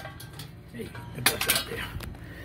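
Light metal clinking and clattering as metal parts are handled, with a few sharp clanks about a second and a half in.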